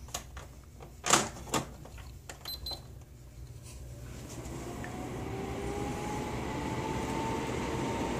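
A small electric fan switched on: a couple of clicks about a second in, then the fan spinning up into a steady whir with a faint rising whine that grows louder over several seconds.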